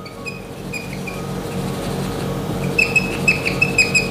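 A whiteboard marker squeaking against the board in short, high-pitched strokes as it writes over old ink, the squeaks coming thickest in the second half. Background music plays underneath.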